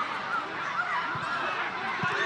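Several voices shouting and calling at once on a football pitch, overlapping rising and falling cries from players, coaches and spectators.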